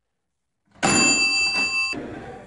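A loud mechanical clunk and a bell ringing on an antique oak-and-cast-metal machine as its lever is worked, starting nearly a second in and cut off suddenly about a second later.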